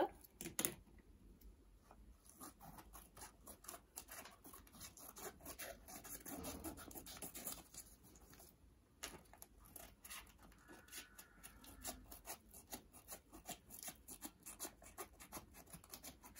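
Scissors cutting through paper sheets glued onto a cardboard notebook cover, trimming off the excess edge: a long run of quiet snips and clicks.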